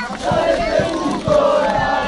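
Football supporters' group chanting together in unison, with steady low thumps keeping a beat under the chant.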